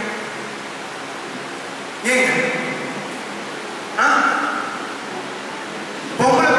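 A man speaking into a microphone in two short bursts, about two and four seconds in, with a steady hiss between them.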